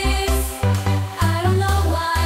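AI-generated dance-pop song with a pulsing electronic bass beat, about four pulses a second, under a sung vocal line.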